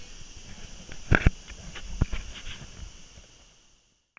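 Camera-handling knocks, two loud ones close together about a second in and another at about two seconds, with fainter taps between, over a steady high hiss. The sound fades out near the end.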